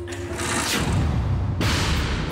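Film soundtrack music with two sound effects laid over it: a whoosh falling in pitch about half a second in, then a sudden loud burst of noise near the end.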